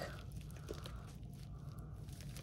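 Faint crinkling of a small plastic zip-top bag full of resin diamond-painting drills being handled, with a few light ticks.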